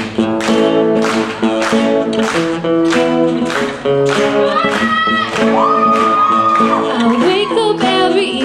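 Acoustic guitar strummed steadily in a live performance. Partway through, a voice sings a line that rises into a long held note, wavering near the end.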